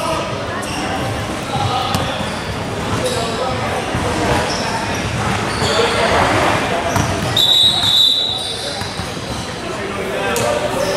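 A basketball bouncing on a gym floor, with indistinct voices of players and spectators echoing around a large gym. About seven and a half seconds in there is a brief high-pitched squeak.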